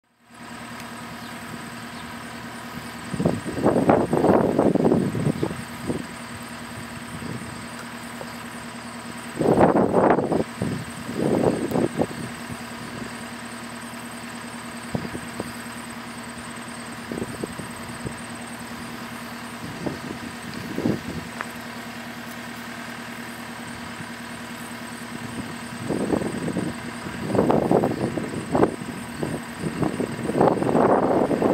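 JCB skid steer's diesel engine idling steadily, with several louder surges: a few seconds in, around ten seconds, and again near the end.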